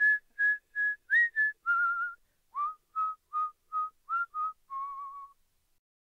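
A person whistling a short tune in two phrases of about six clear notes each. Each phrase ends on a longer held note, and the second phrase is pitched lower than the first. The tune stops about five seconds in.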